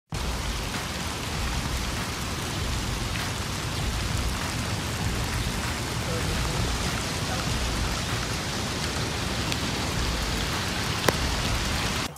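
Rain falling steadily on pavement and grass, an even hiss of many drops, with one sharp tap about a second before the end.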